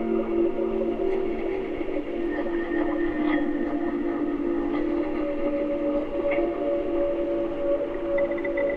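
Ambient electronic music built on underwater hydrophone recordings of a river: layered, sustained drone tones that shift slowly, with a higher tone coming in about five seconds in and a few faint clicks scattered through.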